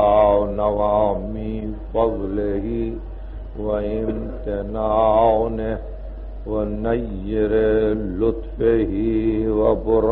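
A man chanting Arabic recitation in a slow, drawn-out melodic style, holding long notes in phrases of a second or two with short breaths between. A steady low hum from the old tape recording runs underneath.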